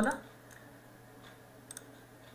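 A computer mouse button clicking twice in quick succession near the end, over a faint steady room hum.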